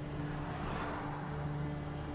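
Car engine and road noise heard from inside a moving car: a steady low hum at an even pitch.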